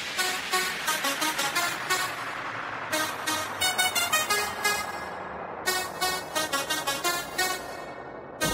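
Makina dance music in a breakdown: a bright synth lead plays quick, staccato repeated notes with no kick drum or bass underneath.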